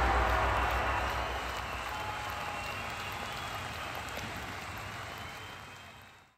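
Crowd applause fading out steadily.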